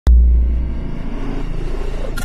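Logo-ident sound design: a sudden deep bass hit at the very start, easing into a low rumble.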